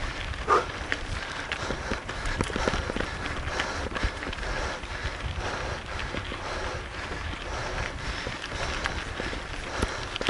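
Mountain bike rolling fast over a loose gravel road: tyres crunching on the stones and the bike rattling over bumps, with steady wind rumble on the handlebar camera's microphone. A brief squeak sounds about half a second in.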